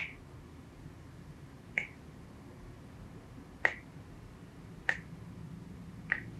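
Finger knuckles cracking as each finger is pulled during a hand massage: four sharp pops, irregularly spaced over several seconds.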